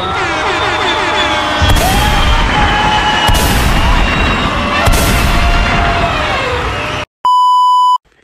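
Loud meme-edit soundtrack: dense layered music and tones, with three heavy booms about a second and a half apart. Near the end it cuts off suddenly and a steady high test-tone beep, the kind played over TV colour bars, sounds to the end.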